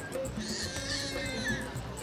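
Quiet background music with a few held notes over a fast, steady high tick.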